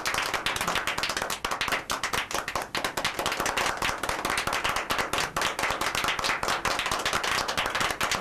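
Several people applauding, a dense run of overlapping hand claps that keeps up steadily.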